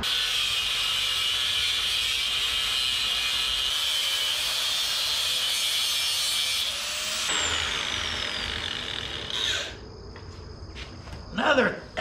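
Angle grinder with a cutoff wheel cutting through quarter-inch steel flat bar, a steady high-pitched grinding. About seven seconds in the cut stops and the wheel winds down with a falling whine, followed by a short burst of grinding near the end.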